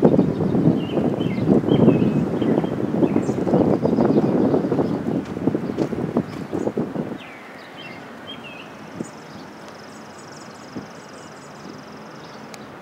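Wind buffeting the microphone in irregular gusts for about the first seven seconds, then dropping suddenly to a steadier, quieter outdoor background with a few faint high chirps.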